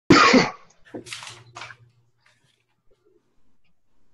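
A person's voice: one short loud burst right at the start, then a few softer, breathy sounds.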